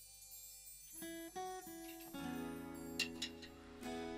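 Quiet acoustic guitar music. After a near-silent first second, single plucked notes begin a piece, and then a chord rings on.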